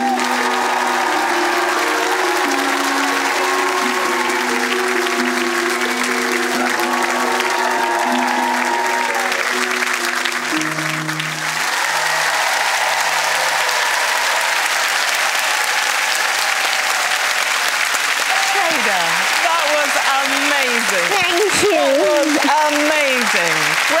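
A studio audience applauding over the closing bars of the performance music, whose held notes stop about halfway through. The clapping carries on alone, and voices call out over it in the last few seconds.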